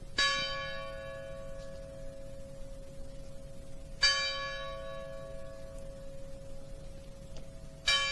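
Church bell of the Anime Sante in L'Aquila tolling slowly: three single strokes about four seconds apart, each ringing on until the next. These are among the 309 memorial tolls, one for each victim of the earthquake.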